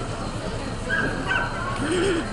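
A dog barking a few short barks about a second in, with people's voices in the background.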